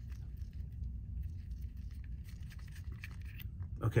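Faint handling noise of nitrile-gloved hands unscrewing a small metal airgun regulator along its long thread, with light scattered ticks and scrapes over a steady low background rumble.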